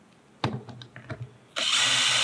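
A few light clicks as the screw and driver bit are set, then a power drill starts about one and a half seconds in and runs steadily, driving a screw through the metal speaker hanger into the base of the speaker.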